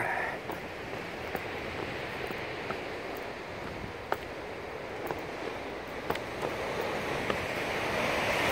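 Steady wash of sea waves against a rocky shore mixed with wind on the microphone, growing a little louder near the end, with a few faint clicks scattered through.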